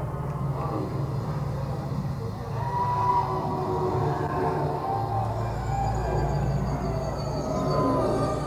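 Muddy audience recording of a live hard rock band: a dense, steady low rumble with wavering tones on top and no distinct drum hits.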